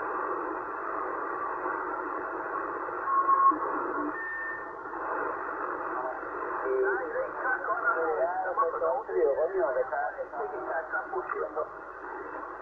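Receiver audio from a Yaesu transceiver being tuned down the 27 MHz CB band. Thin, narrow-band static comes first with a couple of brief whistles, and from about halfway through it gives way to garbled, off-tune voices of distant stations.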